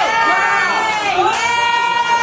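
A woman's long, high-pitched scream of excitement, held for the whole stretch, dipping in pitch about a second in and rising again.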